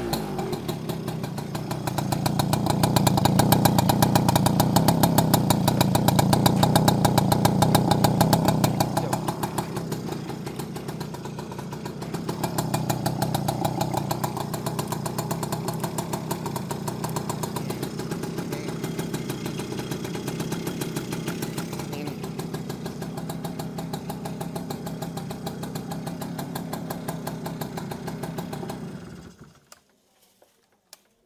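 Yamaha V80's small single-cylinder two-stroke engine running, held at higher revs twice (from about two seconds in to nine, and again briefly around thirteen seconds) and idling in between and afterwards. It is switched off about a second before the end.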